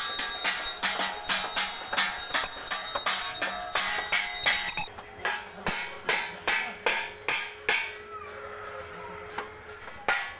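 Steel thalis (metal plates) being beaten, a fast ringing clatter of strikes. About five seconds in, the dense clatter cuts off suddenly. Single strikes follow about once a second, then die away near the end.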